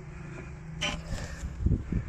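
Handling noise as the recording phone is reached for and picked up: a short scrape a little under a second in, then a run of low bumps, over a steady low hum.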